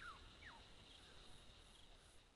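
Near silence: faint outdoor bush ambience with two brief, falling bird chirps in the first half second and a faint steady high insect drone.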